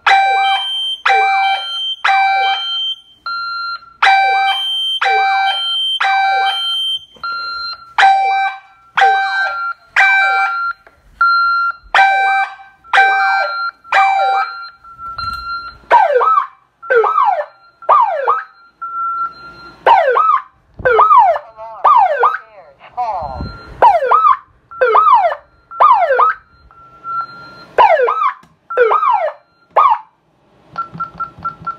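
Alarm siren of an ADT Safewatch Pro 3000 security system sounding. For about the first half it gives falling whoops in groups of three with a short pause after each group, the temporal-three pattern of a fire alarm, with a steady high beep in the gaps. After that it changes to an unbroken run of falling whoops about one a second.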